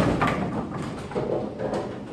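Bowling pins clattering and settling after a urethane ball crashes into them, dying away, with a few scattered knocks and the rumble of the alley.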